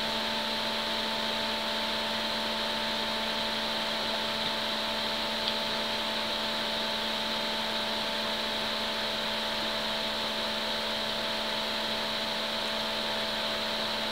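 A steady background hum and hiss with a few fixed tones, unchanging throughout, with two faint ticks around four and five seconds in.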